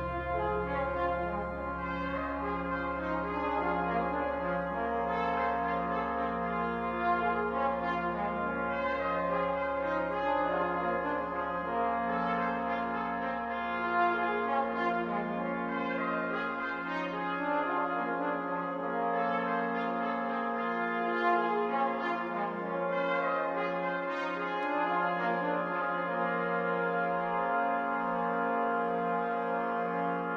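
Concert band music: brass (horns, trombones, trumpets) trade short repeated figures over sustained chords, slow and stately. A low held note underneath dies away about halfway through.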